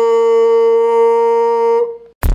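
One steady, held musical note, cut off just before the end.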